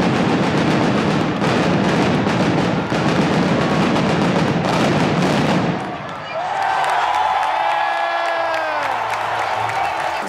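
Arena show opening: loud music and crowd noise with rapid pyrotechnic bangs. About six seconds in the din drops and long rising-and-falling tones carry on over a softer crowd.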